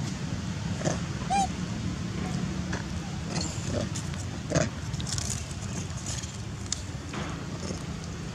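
Long-tailed macaques giving short calls: a brief high squeak about a second and a half in, a louder short call around four and a half seconds in, with scattered small clicks between.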